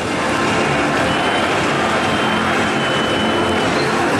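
Loud, steady noise of a large stadium crowd, many voices blending into one continuous din.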